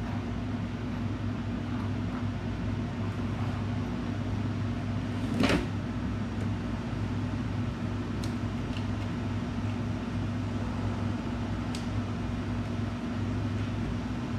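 Steady low machine hum, like a fan or air-conditioning unit. Over it come one knock about five and a half seconds in and a few faint clicks as the plastic saddlebag lid and speaker hardware are handled.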